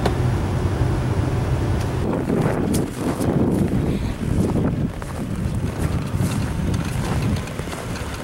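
Lexus LS400's V8 idling, a steady low hum, with wind buffeting the microphone and irregular rustling noise from about two seconds in.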